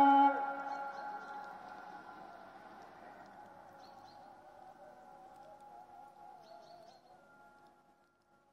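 The held last note of a phrase of the afternoon call to prayer (ezan), sung through mosque loudspeakers relayed by a central system, stops just after the start, and its echo across the town fades slowly over several seconds, with faint wavering sung notes still carrying from farther loudspeakers. Faint high chirps come twice, near the middle and near the end.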